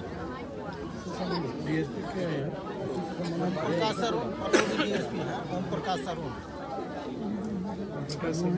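Several people talking at once around the microphone: crowd chatter with overlapping voices.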